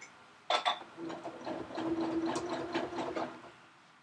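Janome domestic sewing machine free-motion quilting: the motor hums and the needle stitches rapidly through the quilt sandwich. It starts about a second in and stops shortly before the end, the machine set to leave the needle down when it stops.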